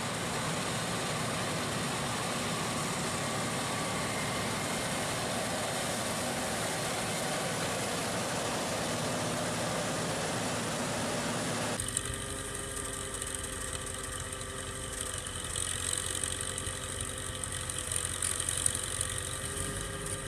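John Deere tractor's diesel engine running with a tractor-mounted cotton picker, a dense steady machine noise. About twelve seconds in the sound cuts to the engine running more evenly, with a steady hum.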